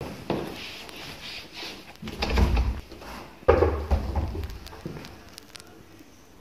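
Footsteps and a door in a house's hallway: a few separate knocks and thuds, the loudest two about two and three and a half seconds in. The narrator takes them for a door closing.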